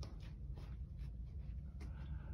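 Faint rustling and soft irregular taps from the handheld phone and the steps of the person carrying it, over a low steady room rumble.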